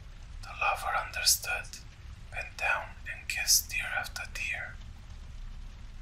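Whispered speech in two phrases, over a steady low background rumble of fire-crackling ambience.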